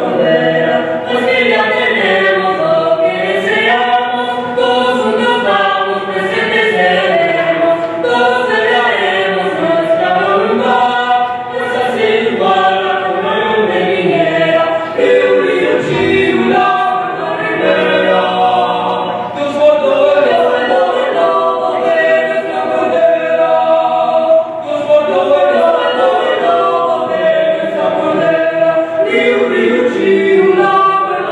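Mixed vocal quartet, two female and two male voices, singing unaccompanied in parts, with long held notes.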